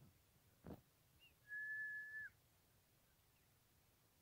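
A single whistle held on one steady high pitch for almost a second, about a second and a half in, preceded by a short rising chirp and a soft knock, over near silence.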